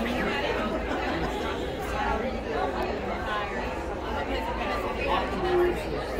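Background chatter of many people talking at once in a large hall, a steady hubbub of overlapping conversations with no single voice standing out.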